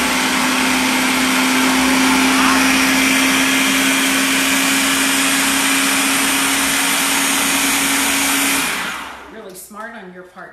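Food processor motor running loud and steady with a constant hum, chopping cauliflower florets into rice-sized bits. It shuts off and spins down about nine seconds in.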